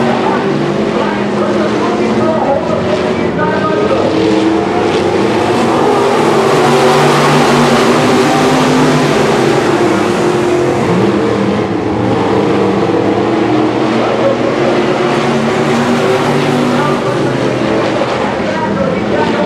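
Several dirt-track sport modified race cars running laps, their engines rising and falling in pitch. The sound is loudest about halfway through as the cars pass closest.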